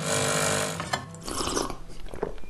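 Automatic espresso machine buzzing as its pump pushes coffee out of the twin spout, for about the first second. A fainter, softer noise follows.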